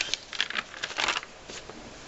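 Paper pages of a ring binder being turned, rustling in two spells, the louder one about a second in.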